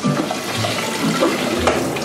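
Water running from a kitchen tap into a stainless-steel sink as food and dishes are rinsed under it.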